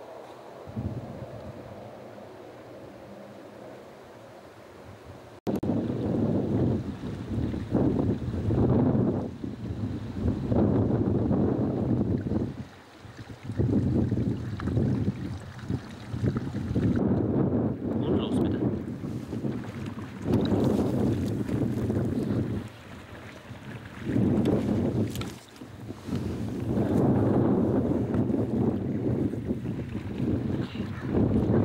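Wind gusting across an outdoor microphone: loud, uneven rumbling buffets that surge and drop, starting abruptly about five seconds in after a quieter steady hiss.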